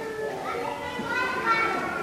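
Children's voices in the background, high-pitched and rising and falling, quieter than the adult talk around them.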